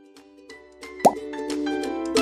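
Background music fading in: held notes joined by quick short struck notes that grow louder. A single cartoon plop sound effect about a second in is the loudest sound.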